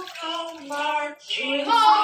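A young voice singing a few held notes, with a break a little past the middle, over water pouring from a plastic jug into a jar.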